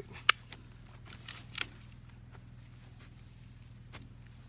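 Handling noise close to the microphone: one sharp click about a third of a second in, then a few fainter clicks and knocks in the next second or so, over a faint steady outdoor background.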